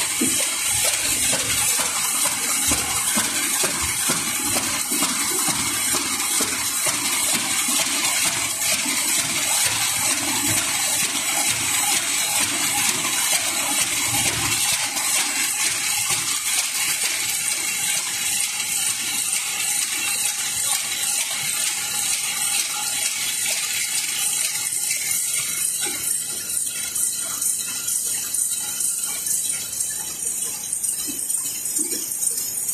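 Paper bag making machine running: a loud, steady hiss with a fast mechanical clatter, easing slightly near the end.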